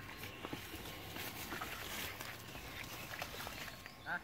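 Faint footsteps and rustling through dry grass and fallen leaves, in quiet open-air ambience with a few small irregular ticks.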